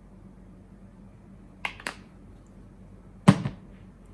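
A plastic cleanser tube being handled and put down: two light clicks a little over a second and a half in, then a sharper, louder knock just after three seconds, over a low steady hum.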